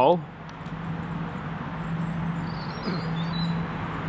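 A steady low motor hum, slightly uneven in strength, over faint open-air background noise.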